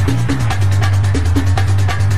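Music with a deep bass line and a fast, steady beat.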